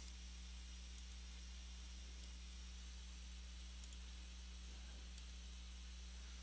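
Quiet room tone: a steady low electrical hum under a faint hiss, with a few faint clicks.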